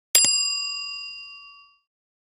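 A bright bell-like ding, struck once with a quick double click at the start, ringing and fading out over about a second and a half.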